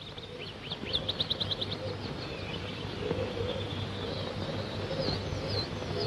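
Birdsong: a quick trill of short high chirps about a second in, then a few scattered chirps near the end, over a low steady hum.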